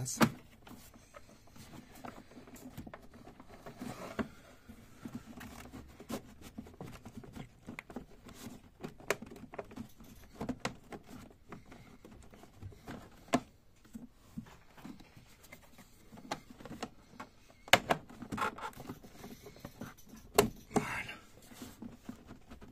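Hands handling and pushing plastic engine-bay parts into place: irregular clicks, taps and knocks with a few louder snaps toward the end.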